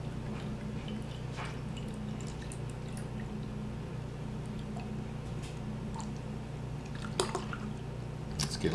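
Stout being poured from a bottle into a tilted glass: a steady faint pour over a low hum, with scattered small ticks and one sharper click about seven seconds in.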